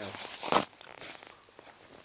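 Handling noise from a handheld camera rubbing against fabric: one short, loud rustling scrape about half a second in, then faint rubbing and small clicks.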